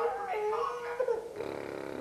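A voice holding long, drawn-out notes that slide and step in pitch, sung or crooned to a toddler, with a lower-pitched stretch near the end.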